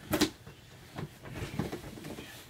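Cardboard sneaker box being handled, with a few soft knocks and rustles as its lid and contents are moved.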